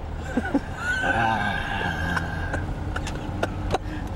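A man's voice blared through a van-mounted megaphone: a long, drawn-out, distorted call, rising at its start, that rings thin and nasal like a whinny. Several sharp clicks follow in the second half, over a steady low vehicle rumble.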